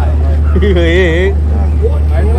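A person's voice calls out one drawn-out word with a wavering pitch, lasting under a second, over a steady low machine drone.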